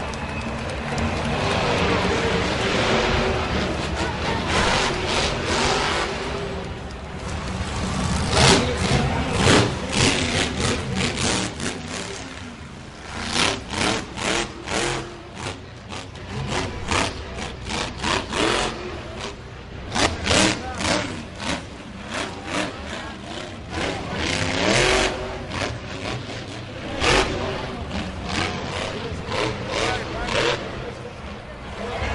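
Monster truck engine revving hard in short, irregular repeated bursts during a freestyle run, heard from high in the stadium stands over arena noise.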